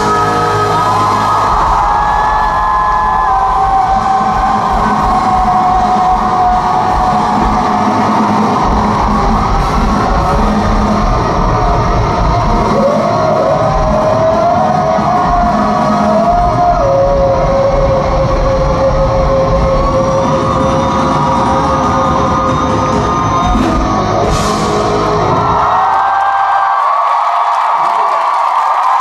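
Live rock band of electric guitars, bass and drums playing the loud closing stretch of a song, with long held and bending guitar lines. About two seconds before the end the drums and bass stop sharply, leaving a held guitar note over the crowd.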